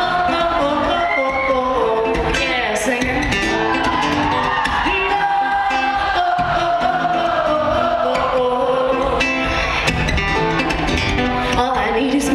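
A woman singing live over a rapidly strummed acoustic guitar, the strums sharp and percussive under the sung melody.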